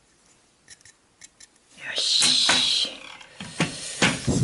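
Handling noise of a small wooden model ship hull: faint clicks and taps, then a louder rubbing rush about two seconds in, and a couple of sharp knocks near the end as the hull is set down on its wooden stand.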